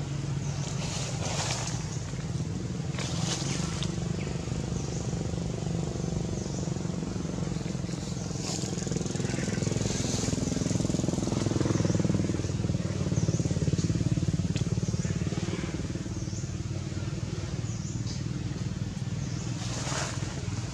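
A motor engine running steadily with a low hum that swells for a few seconds around the middle, with brief high clicks scattered over it.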